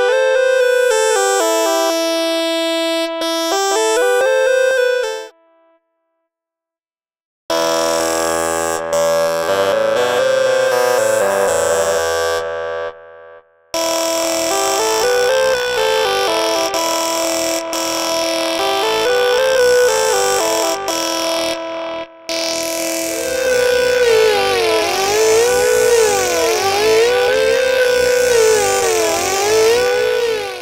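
GarageBand's Vox Box Lead synth patch playing a short repeated melodic phrase. Its tone changes from passage to passage as the patch's Smart Controls are changed, with a gap of about two seconds early on. In the last third the notes slide up and down in pitch.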